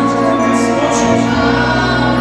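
A small group of voices, women and a man, singing a gospel worship song together through microphones and a PA, over steady keyboard accompaniment.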